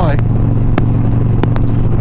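Motorcycle engine cruising at steady highway speed, a constant low drone, with a few sharp clicks over it.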